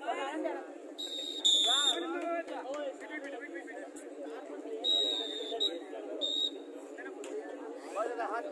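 About five short, shrill whistle blasts, the loudest about a second and a half in, over a crowd's loud chatter and shouting.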